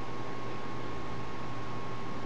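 Steady background hiss of room tone, with a faint thin whine and a low hum underneath.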